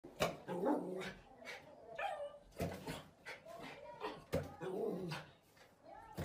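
A dog bumping a rubber balloon with its nose, three sharp taps about two seconds apart, each followed by a short voice.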